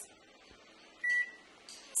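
Bluesonik microwave oven's keypad beeper giving one short, high beep about a second in as the 6 key is pressed, setting a 6-minute cook time.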